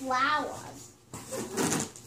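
A young child's voice for about half a second, then a brief rustling noise near the end.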